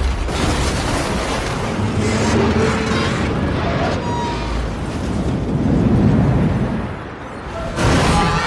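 Film sound design of a tornado: a dense, continuous roar of wind and debris with deep rumbling booms and crashes under dramatic music. A heavy low swell comes about six seconds in, then a sharp loud hit just before the end.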